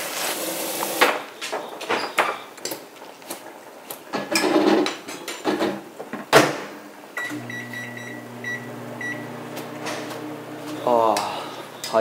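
Kitchen clatter: scattered knocks and clicks of dishes and cupboards being handled, with one sharp knock about six seconds in. From about seven seconds a steady low hum sets in, with a few short high beeps.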